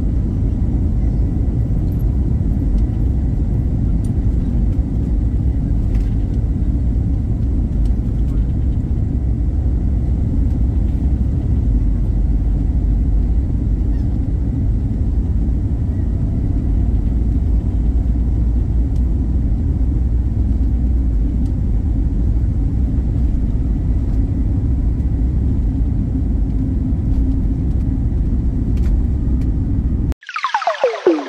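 Jet airliner heard from inside the cabin during taxi and takeoff: a loud, steady low rumble of engines and wheels on the runway.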